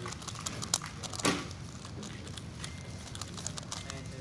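A JPearly Galaxy Megaminx v2 M being turned rapidly in a speedsolve: a fast, uneven stream of plastic clicks and clacks as its faces snap round, with one louder clack a little over a second in.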